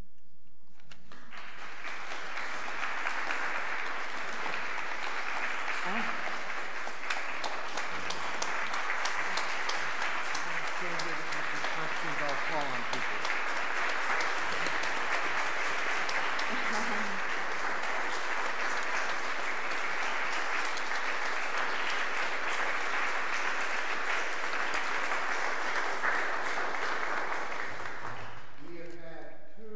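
Audience applauding, a dense steady clatter of many hands that starts about a second in and stops shortly before the end, with a few voices faintly heard under it.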